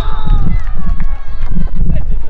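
Wind buffeting the microphone with a heavy, uneven low rumble, over faint shouts from players on the pitch.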